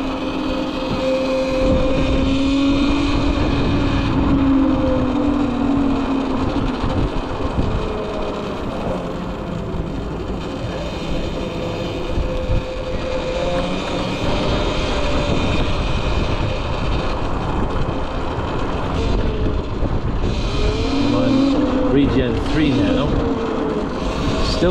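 Wind and road noise on the riding Cake Kalk& electric motorcycle, with the electric motor's whine rising in pitch as it accelerates early on and again near the end.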